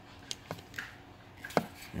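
A few short, sharp clicks and taps from a hand working the chrome channel selector knob on a Cobra 29 LTD CB radio, the loudest about one and a half seconds in.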